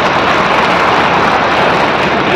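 Audience applauding: a dense, even clatter of many hands clapping.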